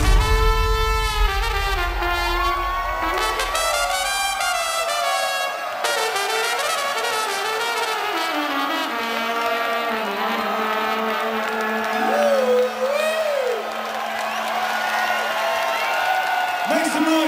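A trumpet playing a melody live over an electronic dance track. The heavy bass beat drops out about five seconds in, leaving the trumpet over sustained synth chords.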